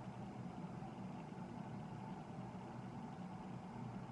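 Faint, steady low background hum with no distinct events.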